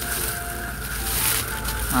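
Plastic packaging of a bag of toy animals crinkling as it is handled, loudest about a second in, over quiet background music.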